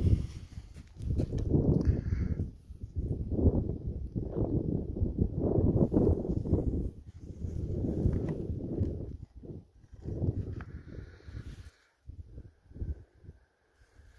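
Wind buffeting the microphone in gusts, a low rumble that swells and fades every second or two, mixed with handling noise as the camera is moved. It dies down to a faint rumble over the last couple of seconds.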